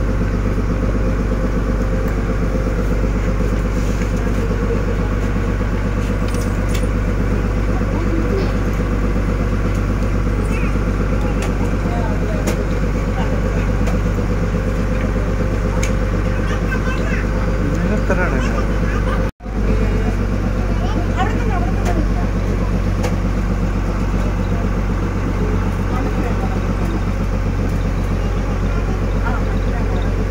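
Passenger ferry boat's engine running steadily under way, a deep continuous drone heard from inside the wheelhouse. It cuts out for an instant about two-thirds of the way through, then carries on unchanged.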